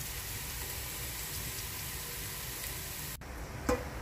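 Minced garlic sizzling in hot cooking oil in a steel pot, frying until golden and fragrant: a steady hiss that cuts off abruptly a little after three seconds in, leaving a fainter sound.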